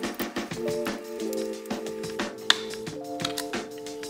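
Background music with sustained, held chords, over light irregular clicks and taps from small parts being handled, with one sharper click about two and a half seconds in.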